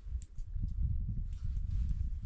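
Light knocks and handling noise as a wooden-handled axe is turned over in the hands, over a steady low rumble.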